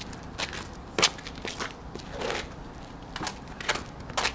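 Rally sounds on an asphalt court: a racket hitting the ball and the ball bouncing, heard as scattered sharp knocks, the clearest about a second in and another near the end, with sneakers scuffing on the asphalt between.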